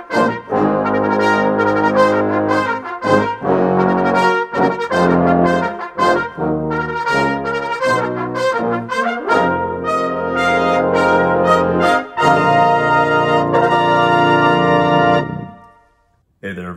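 Trombone playing a melody of separate, articulated notes, ending on a long held note that fades away near the end.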